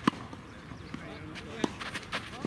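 A tennis ball struck with a racket just after the start, a sharp pop, then another sharp ball impact about a second and a half later.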